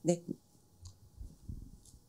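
Low, soft bumps and a couple of faint clicks from a handheld microphone being handled.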